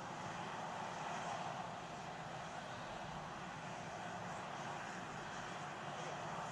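Steady hiss and rumble of ambient noise from an outdoor microphone at the launch pad, with no distinct events.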